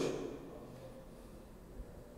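A man's voice trails off at the very start, then faint room tone with a faint steady hum.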